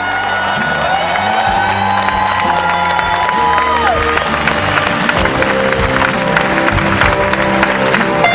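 Live band music with held, sustained notes, one of them sliding up and then dropping away about halfway through. A large crowd cheers and applauds over it, the clapping thickening in the second half.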